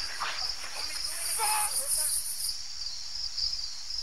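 Crickets chirping in a steady pulsing trill. A higher, brighter insect buzz joins about a second in and lasts about a second and a half, with a few brief chirping calls alongside.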